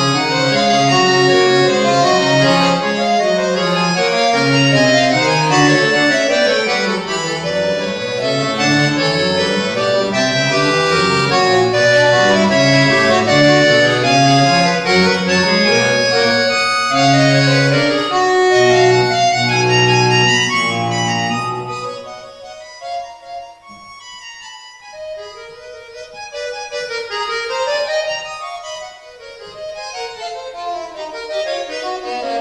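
Roland V-Accordion playing a solo piece with several lines moving at once over sustained bass notes. About two-thirds of the way in the music drops much quieter, leaving a thinner line of higher notes.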